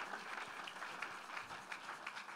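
A congregation applauding: many people clapping at once, fairly faint against the room.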